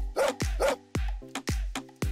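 Upbeat dance-style outro music with a kick drum about twice a second, and a dog barking twice in the first second.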